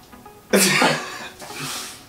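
A person's laughter in two sudden, breathy bursts: the first loud, about half a second in, and a softer second one near the end.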